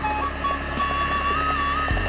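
Background music: a melody moving in steps between held notes, over a steady low hum.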